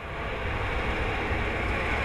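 Heavy dump truck driving past, its engine and tyre noise steady after a slight swell at the start.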